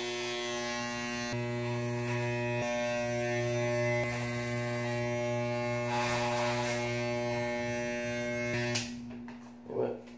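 Corded electric hair clippers running with a steady buzz, their blades rasping into the hair about six seconds in as they are pushed into his dreadlocks at the back of his head. The clippers are switched off with a click about a second before the end.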